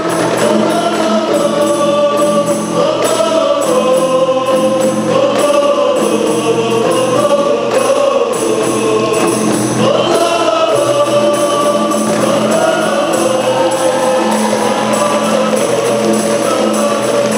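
A group of men singing together with rebana frame drums beating a steady rhythm: a classic rebana ensemble performing a qasidah song.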